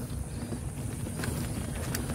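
Mountain bike rolling over a rough dirt track: steady tyre and road noise with the bike rattling over bumps, and a couple of faint clicks.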